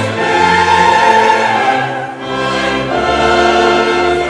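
Choir singing with full orchestra in a late-Romantic cantata, holding sustained chords. The sound thins out about two seconds in, then a new chord swells.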